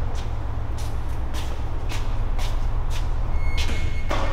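A steady low rumble under footsteps that click about twice a second. A short high beep-like tone sounds near the end.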